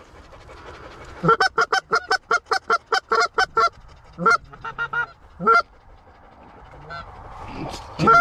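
Loud goose honks and clucks: a fast run of about six short honks a second, then after a pause a few more singly and in a quick group of four. Several of the honks break from a low note up to a high one.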